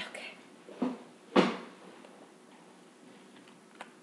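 Knocks and thumps of a person reaching for and handling things at a table: a knock at the start, another just before a second in, the loudest thump about a second and a half in, and a small click near the end.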